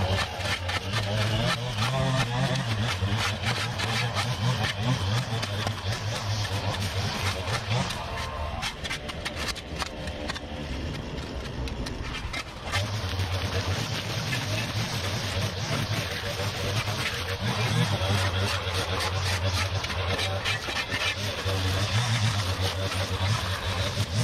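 A rake scraping and dragging through brush debris over dirt and concrete, in many short strokes, over a steady small-engine hum that drops out for a few seconds midway and then returns.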